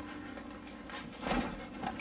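A refrigerator door being pulled open, with a soft thump a little over a second in and a smaller one just before the end.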